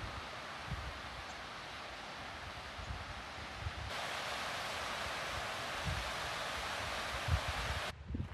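Steady rush of a mountain stream cascading over rocks, getting a little louder about four seconds in, with scattered soft low thumps beneath it.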